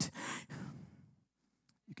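A man's breathy exhale close to a handheld microphone, loudest at first and fading out over about a second, with a faint click near the end.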